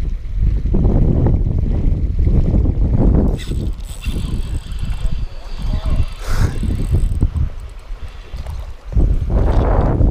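Wind buffeting the microphone while a small largemouth bass is reeled in on a spinning reel, with two short, brighter noises about three and six seconds in.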